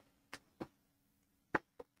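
A few short, faint clicks and taps as a sheet of coloured paper is handled and set aside: four brief ticks with near silence between them.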